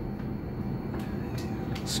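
Steady low hum and rumble inside a stationary city bus waiting at a stop.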